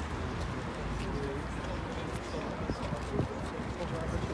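Crowd of people talking at once: an indistinct chatter of many voices with no single speaker standing out, over a steady low rumble.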